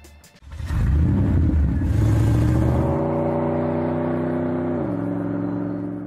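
A car engine revving up and held at high revs, its pitch dropping near the end before it fades away.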